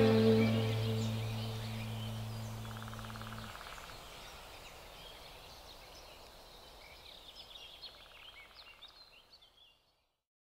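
The song's last low chord is held and cuts off about three and a half seconds in, leaving a bed of bird chirps and outdoor ambience that fades out to silence near the end.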